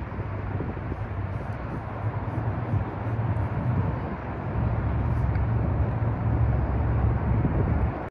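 Steady rumble of nearby road traffic, growing louder about halfway through.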